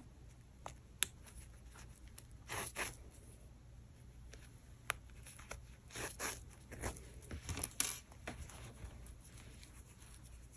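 Faint rasping rustles of fine yarn being drawn through bulky wool crochet stitches, in a few short pulls, with two small sharp clicks between them.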